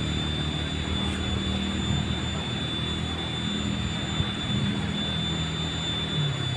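A steady low engine drone, unbroken and shifting slightly in pitch, with a thin steady high whine above it.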